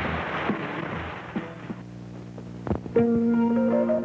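A live rock band with electric guitars and drums plays to the end of a song about a second and a half in, leaving a quieter held chord. A couple of clicks follow, and about three seconds in different music starts with long, held notes, noticeably louder.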